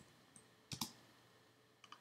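A sharp double click from a computer's mouse or keys about a second in, with a couple of fainter clicks, against near silence.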